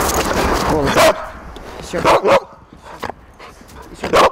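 Siberian husky barking on the 'speak' command: short, sharp barks about one and two seconds in, and a smaller one near three seconds.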